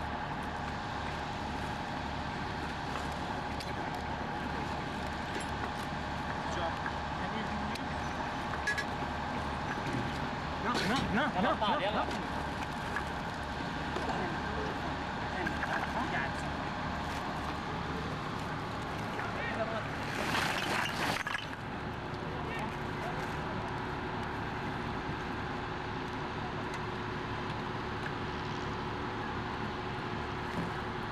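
Soundtrack of an insurgent mortar team's own handheld video played back through speakers: steady street traffic with men's voices, and louder bursts about eleven and about twenty seconds in.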